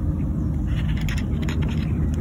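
Wind buffeting a phone's microphone outdoors: an uneven, loud low rumble, with a few light clicks of handling.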